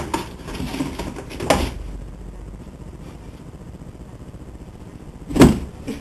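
Thumps and scrapes of a cat playing at a cardboard box: a few light knocks in the first two seconds and one louder thump near the end.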